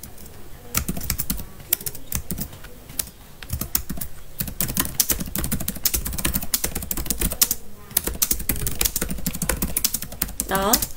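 Typing on a computer keyboard: irregular runs of key clicks, with a short pause about three-quarters of the way through.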